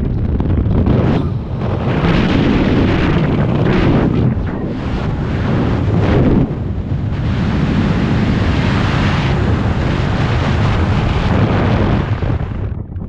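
Loud wind rush buffeting a skydiver's camera microphone in freefall, with brief dips in strength every few seconds.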